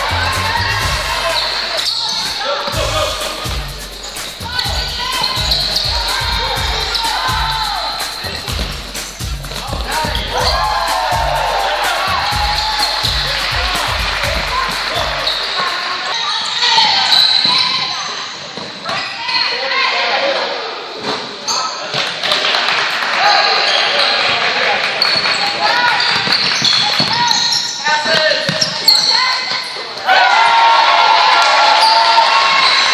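Basketball game sounds in a large gym: a ball bouncing on the hardwood floor and voices calling out, echoing in the hall.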